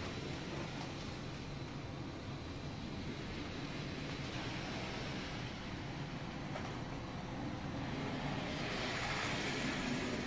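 Model train running along the layout's track, a steady running noise that gets louder over the last couple of seconds.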